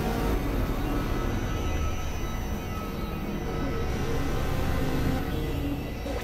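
Experimental electronic drone and noise music from synthesizers: a dense, steady low drone under a noisy texture, with a few thin held tones.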